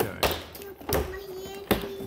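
A clear plastic packaging tray being handled: a few sharp taps and knocks, about four in two seconds.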